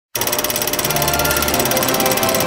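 Rapid, even clatter of a film projector running, starting abruptly just after the beginning, over intro music with held tones.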